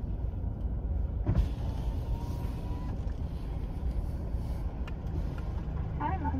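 Car running, heard from inside the cabin: a steady low rumble, with a single knock just over a second in.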